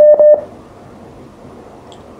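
A short telephone-line beep: one steady tone lasting about a third of a second, broken by a couple of small clicks, followed by faint line hiss.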